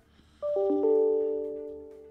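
Electronic notification chime: several bell-like notes sound in quick succession about half a second in, ring together and fade out over about a second and a half.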